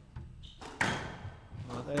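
A squash ball being struck during a rally: a faint knock near the start, then one sharp hit with a short echo just under a second in.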